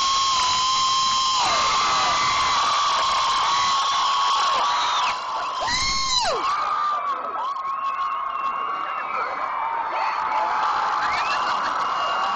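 A crowd screaming and cheering, with many high, long-held screams over the din. It eases slightly about five seconds in, with one voice whooping up and down just after, then swells again near the end.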